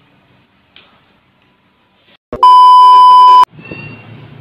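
Quiet room tone, then a sharp click and a loud, steady, high-pitched electronic beep lasting about a second that cuts off abruptly, an editing beep added to the soundtrack.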